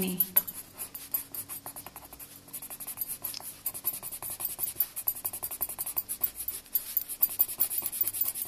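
Coloured pencil scratching on paper in quick, short back-and-forth shading strokes. The strokes are quieter for a moment near the start, then come denser and louder from about two and a half seconds in.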